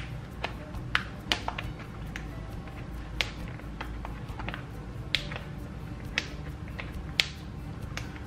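Irregular sharp clicks and snaps as a plastic divider's punched edge is pushed onto the stiff, tight discs of a disc-bound planner. The discs are too tight for the pages to slide on smoothly.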